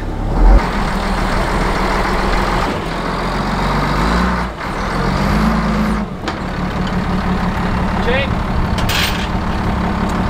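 Large wheel loader's diesel engine running under load as it pushes on a stuck excavator's arm, its pitch rising and settling back a little past the middle. A loud thump about half a second in.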